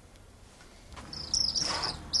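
High-pitched insect buzzing, starting about a second in and loud.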